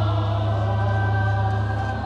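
Stage chorus of voices singing a long held chord over live pit-band accompaniment in a rock opera, with a steady low hum underneath.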